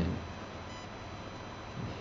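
Room tone of a voice-over microphone: a steady hiss with faint, steady high-pitched electrical tones and no distinct sounds.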